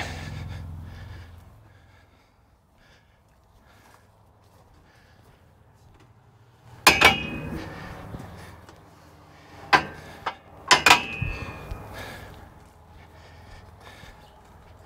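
Steel cattle-handling gate and its latch clanking as the gate is worked open: a sharp metallic clank with a short ring about halfway through, then three more a few seconds later, the last two close together.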